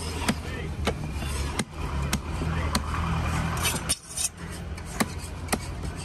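A heavy cleaver chopping through grouper steak, skin and bone into a wooden log chopping block: a series of sharp knocks, roughly one every half second to a second, over a steady low hum.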